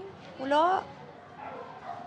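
A short vocal sound about half a second in, rising in pitch like a questioning "hm?".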